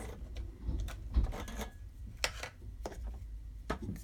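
A handful of sharp, light clicks and taps, spread unevenly, as pens and craft supplies are handled and picked through on the desk to choose a pen.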